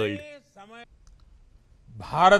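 Narration speech ending in the first second, then about a second of faint low hum with a few faint clicks, before a man's voice begins at the very end.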